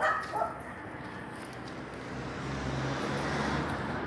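A dog barking briefly near the start, over steady outdoor background noise, with a low hum swelling in the second half.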